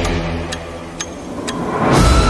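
Clock ticking, about two ticks a second, as the background music drops away, then a rising swell leads back into the music near the end.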